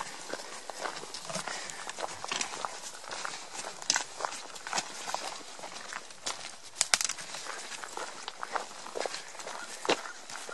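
Hiking footsteps crunching on a rocky dirt trail, with irregular sharp taps of trekking-pole tips on stones. A quick cluster of sharp clicks about seven seconds in is the loudest moment.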